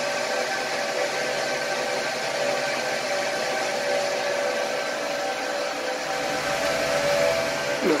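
Cooling fans of Huawei 1288H V5 1U rack servers running steadily: an even rush of air with several steady whining tones on top.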